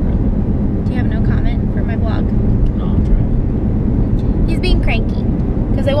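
Car driving, its road and engine noise heard inside the cabin as a steady low rumble, with snatches of voices over it.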